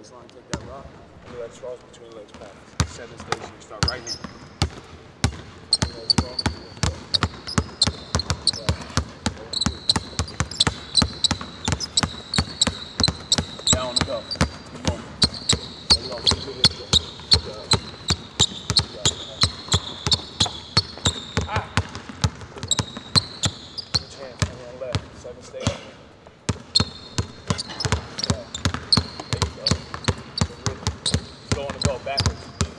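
Basketballs dribbled hard on a hardwood court: a fast, even run of sharp bounces, about three to four a second, starting a couple of seconds in.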